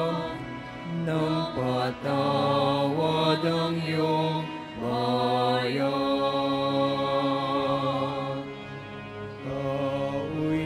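Slow church hymn: long held notes with a slight waver over steady low sustained notes, changing pitch every second or so and fading a little near the end.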